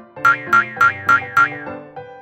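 Cartoon 'boing' sound effects, five sharp springy hits about a third of a second apart, over bright children's backing music.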